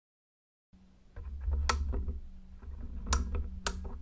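Close handling noise with a low rumble and three sharp clicks of a wooden colour pencil being handled and set down on the sketchbook, over a faint steady hum. It starts abruptly under a second in.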